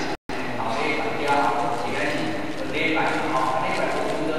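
Speech: one person talking steadily, likely the lecturer, with a brief dropout of the sound just after the start.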